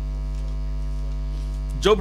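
Steady electrical hum on the microphone and sound system: a low drone with a ladder of fainter, evenly spaced higher tones above it, unchanging throughout.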